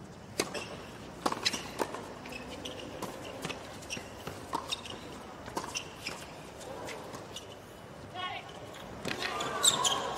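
Tennis rally in a doubles point on a hard court: a serve, then rackets striking the ball and the ball bouncing, sharp pops about every half second to a second. Crowd voices rise near the end.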